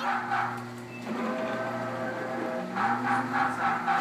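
Electronic sound effect from a coin-operated train kiddie ride's speaker: a few held tones with a short upward slide, starting about a second in and stopping before the end, over a steady hum.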